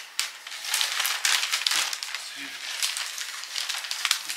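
Christmas wrapping paper crinkling and rustling in irregular bursts as a present is carefully unwrapped by hand.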